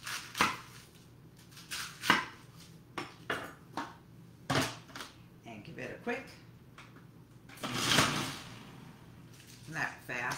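Kitchen knife cutting through a cabbage head onto a wooden cutting board in a few sharp strokes. About eight seconds in, a food processor fitted with an adjustable slicing disc runs for under a second as cabbage is pushed through the feed tube; this short rush is the loudest sound.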